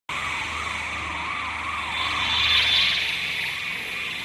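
Electronic intro sound effect: a siren-like tone wavers up and down about twice a second over a rushing hiss and a low hum, swelling to its loudest a little past the middle.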